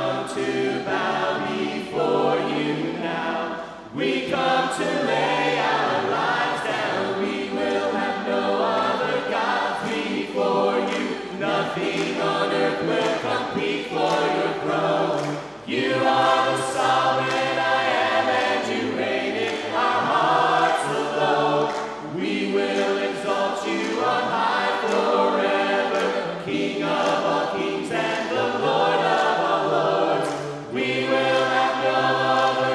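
A cappella worship singing: a group of mixed men's and women's voices on microphones sings a hymn in harmony, with no instruments, in phrases separated by short breaths.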